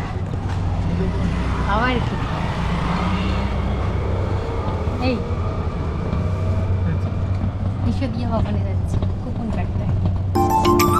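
Steady low rumble of wind and rolling noise from riding in an open passenger cart, with a few short snatches of voices over it.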